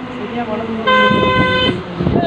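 A horn sounding once, a single steady note lasting just under a second, starting about a second in.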